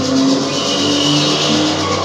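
Car-chase sound effects from a film trailer's soundtrack: cars speeding with engines running hard and tyre noise, loud and steady.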